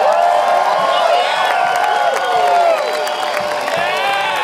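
Concert crowd cheering and whooping at the end of a song, many voices shouting and screaming over one another, easing off a little in the second half.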